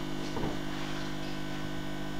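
Steady electrical mains hum, a low buzz holding one pitch with several overtones.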